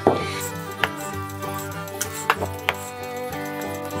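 Background music of steady held notes, with a handful of sharp clicks or taps between about one and three seconds in.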